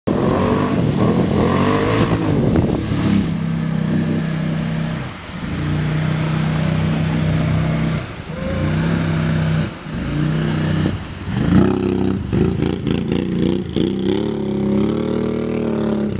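Can-Am Outlander ATV engine revving hard through water, held at steady high revs with the throttle cut and reopened four times, over splashing spray from the tires. In the last few seconds the revs rise and fall with sharp knocks and rattles.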